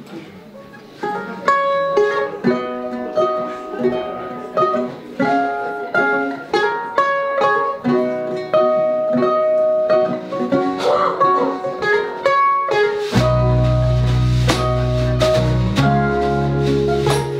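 Live mandolin and acoustic guitar playing a picked song intro, the notes starting about a second in. About thirteen seconds in a bass guitar comes in under them.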